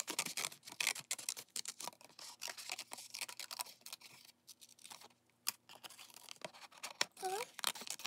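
Scissors snipping through waterslide decal paper: an irregular run of small clicks and snips with light paper rustling.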